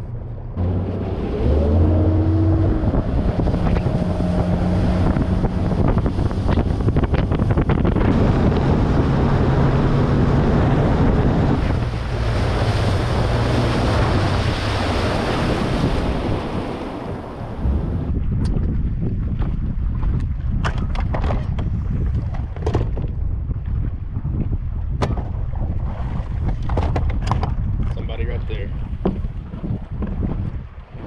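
A 200-horsepower outboard motor on a bass boat speeds up in the first few seconds, rising in pitch, then runs hard at speed under a loud rush of wind on the microphone and water spray. About 17 seconds in the rushing drops off sharply as the boat slows, leaving a lower wind rumble with scattered sharp knocks.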